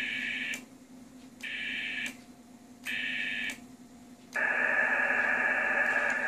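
Amateur HF transceiver's speaker playing receiver band noise, a steady hiss that cuts out three times for just under a second each, with a click at each cut, over a faint steady hum.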